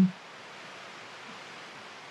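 Rain falling, a steady even hiss.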